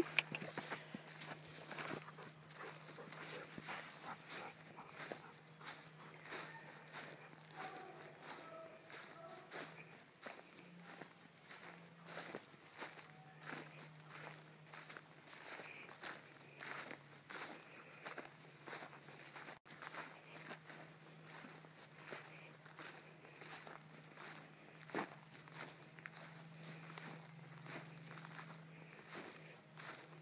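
Footsteps of a person walking through dry, short pasture grass: a run of soft, uneven crunching steps.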